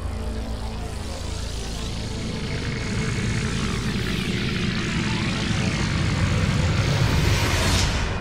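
Intro sound effect: a rumbling, engine-like noise swell that builds gradually, getting louder and brighter toward the end, then falls away.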